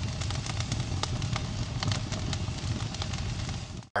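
Fire burning, with many sharp crackles over a low rumble. It starts abruptly and cuts off suddenly just before the end.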